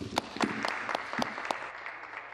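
Members applauding: a group clapping, with a few sharp, louder individual claps near the start, easing off toward the end.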